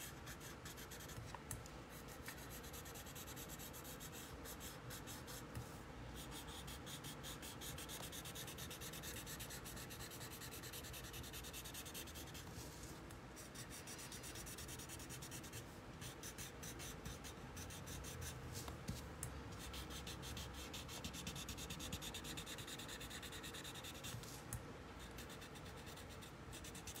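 Faint scratchy rubbing of a paper tortillon, a blending stump, worked in quick strokes over graphite on a paper tile to blend and soften the shading, with a few short breaks.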